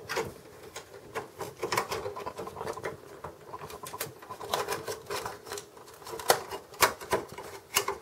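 Irregular light clicks, taps and scrapes as a small circuit board, the front USB port board, is worked against the sheet-metal bracket inside a Dell desktop computer. The board will not seat and is being pulled back out.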